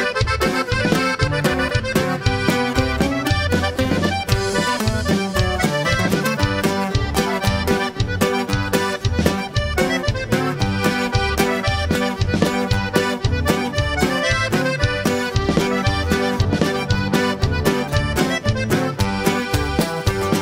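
Norteño band playing an instrumental polka passage: a diatonic button accordion carries the melody over electric bass, drums and strummed guitar keeping a steady, quick beat.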